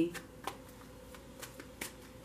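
Crystal Visions tarot cards being shuffled in the hand: a handful of soft, separate card flicks, about five in two seconds, over a quiet room.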